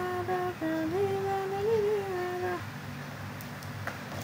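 A woman humming a tune in long held notes that glide from one pitch to the next. She stops about two and a half seconds in, and a few faint clicks follow.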